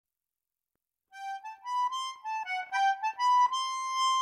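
Instrumental opening of an Irish folk song: after about a second of silence, a single wind instrument plays a quick melody line, its notes changing several times a second.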